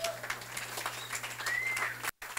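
Audience applauding: a dense, irregular patter of hand claps, with one short rising high note near the end.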